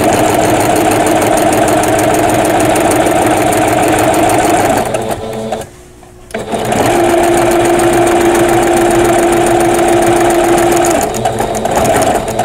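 Singer domestic sewing machine, fitted with a walking foot, running steadily as it straight-stitches through a quilt sandwich. It stops for about a second partway through, starts again, and winds down to a stop near the end.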